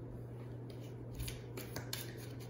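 Tarot cards being shuffled and handled, a run of quick papery flicks starting less than a second in, over a steady low hum.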